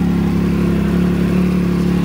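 Can-Am Maverick XRS's turbocharged three-cylinder fuel-injected engine, through its stock muffler, idling steadily and smoothly at about 1,400 rpm.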